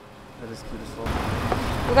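Low rumble of a motor vehicle running or passing close by, coming up about a second in.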